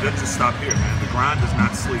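Basketballs bouncing irregularly on a hardwood gym floor, with voices in the hall over them.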